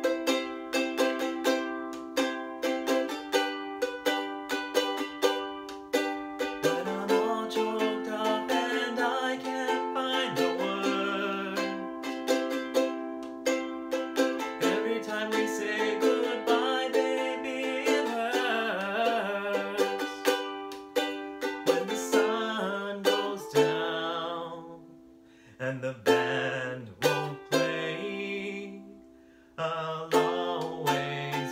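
Ukulele strummed in a steady rhythm, with a man singing over it from about seven seconds in. Near the end the strumming thins to a few single chords under the voice, and the sound dips low twice before the strumming picks up again.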